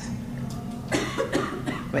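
A person coughing: a few short, sharp coughs starting about half a second in and clustered around the one-second mark.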